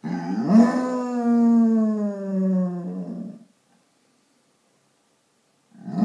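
Basset hound howling at being left alone while its owner is out: one long howl that rises at the start and then slowly sinks in pitch over about three seconds, followed by a pause and a second howl starting near the end.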